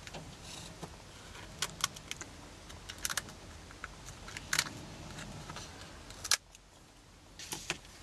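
Scissors snipping and trimming the stiff edge of a dried book-paper and PVA glue shell: scattered sharp snips and clicks, with one louder click about six seconds in.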